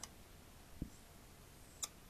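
Faint clicks of a marker tip tapping on a whiteboard as lines are drawn: one at the start and a sharper one near the end, with a soft low thump about a second in.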